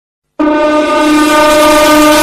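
A train horn sounding one long, steady multi-note blast that starts abruptly about half a second in, after silence.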